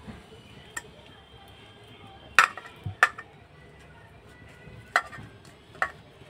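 A hand mashing boiled elephant foot yam and egg in a stainless steel bowl, with about five sharp clinks against the metal bowl, the loudest two about two and a half and three seconds in.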